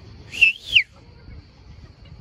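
A short whistle in two quick pitched blasts, the second rising and then sliding down in pitch.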